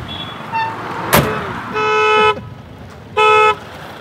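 A sharp thump about a second in, then a vehicle horn honks twice, a longer honk followed about a second later by a short one.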